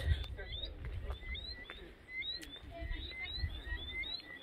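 A chorus of small animals calling with short, rising whistled chirps, several a second and overlapping each other.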